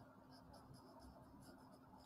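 Faint scratching of a felt-tip marker drawing short strokes on paper, over a low steady hum.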